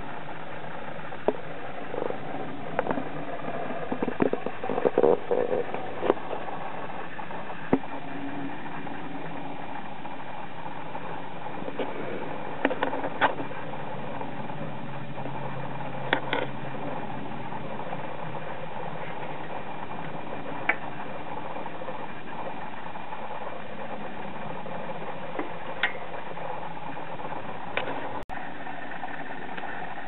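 Case fans and water-cooling pump of a running PC, a steady hum made of several held tones. Occasional brief clicks and knocks stand out above it.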